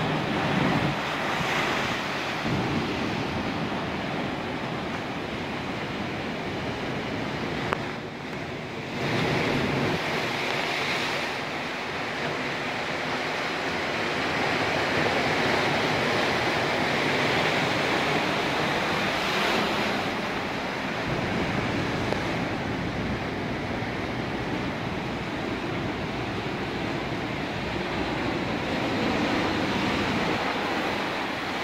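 Ocean waves breaking over rocks below: a continuous rushing wash of surf, briefly quieter about eight seconds in, with wind buffeting the microphone.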